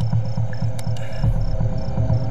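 Crickets chirping, a steady run of short high chirps about four a second, over a low, rapid throbbing pulse.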